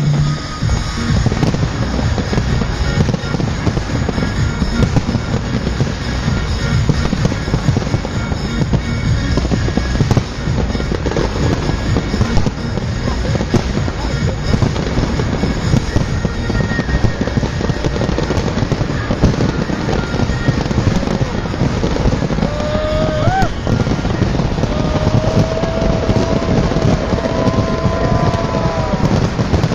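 Fireworks display: a dense, continuous barrage of aerial shell bangs and crackling, with a few whistling tones, some rising, in the last several seconds.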